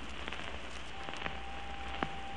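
Surface noise of an acoustic-era 78 rpm record: steady hiss with scattered crackles and clicks. About halfway through, a faint held note begins.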